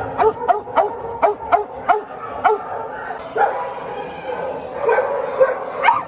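Dogs barking in animal shelter kennels: a quick run of sharp barks through the first two and a half seconds, a few more near the middle and towards the end, over a steady din of other dogs barking.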